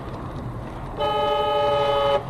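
A vehicle horn sounds one steady blast, lasting about a second and starting about halfway in, as a large truck passes close in the oncoming lane. Under it is the steady road and engine rumble of a car driving on a snowy highway, heard from inside the car.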